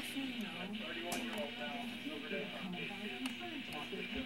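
Faint background television sound: muffled speech with some music under it.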